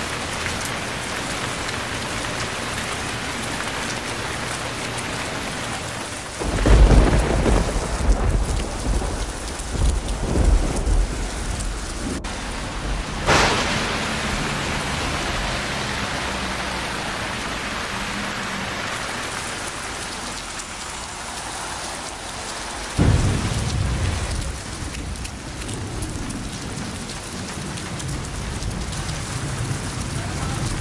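Torrential rain pouring steadily onto a street. A loud roll of thunder comes about a fifth of the way in and rumbles on for several seconds, with a sharp crack a little later. A second thunder rumble starts suddenly about three quarters of the way through and fades.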